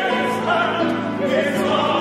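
Mixed ensemble of operatic voices, women and men, singing together in full classical voice with wavering vibrato on held notes.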